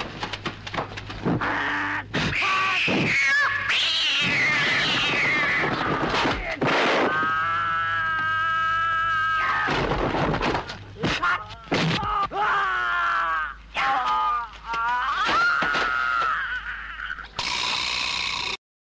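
A voice yelling and crying out in long, high-pitched, bending wails, one cry held for a few seconds midway, over a steady low hum, with a short burst of noise near the end.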